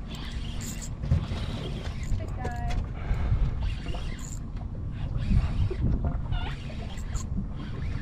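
Wind buffeting the microphone on a small open boat, a steady low rumble throughout, with a few brief sharp ticks.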